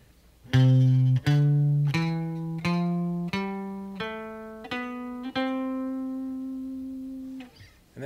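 Epiphone hollow-body electric guitar picking a one-octave C major scale upward from C at the eighth fret: eight single notes, evenly spaced and rising step by step. The top C is left ringing for about two seconds before it is stopped.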